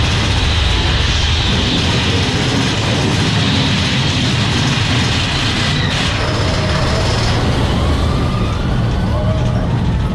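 Big Thunder Mountain mine-train roller coaster running along its track, a steady loud rumble of wheels on rails, with a sharp click about six seconds in.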